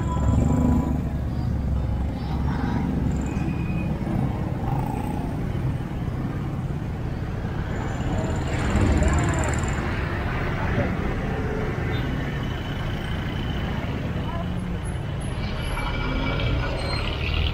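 Street traffic: engines of motorcycles, motorized tricycles and cars running and passing, with a steady low rumble that swells louder about nine seconds in.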